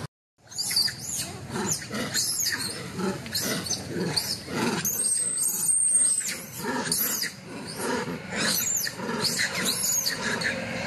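Macaques calling: a dense, continuous run of short, high-pitched squeals and chirps. About five seconds in, one longer, steady high note is held for roughly a second.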